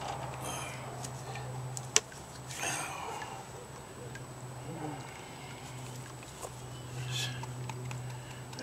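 Water sloshing and swishing in a plastic gold pan as it is swirled and dipped over a tub during panning of fine gold concentrate, in three swishes, with a sharp click about two seconds in and a steady low hum underneath.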